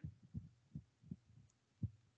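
Quiet pause with a few faint, low, dull thumps at irregular intervals and no speech.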